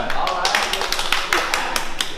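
A few people clapping by hand, quick irregular claps, with voices talking over them.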